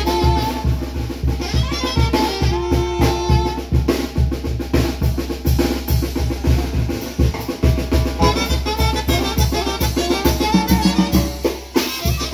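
Zacatecan tamborazo band playing: a tambora bass drum and snare drum keep a fast, steady beat under a held brass melody. The music dips briefly near the end.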